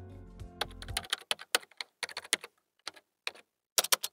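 Computer keyboard typing: a quick, irregular run of keystroke clicks. Background music fades out about a second in.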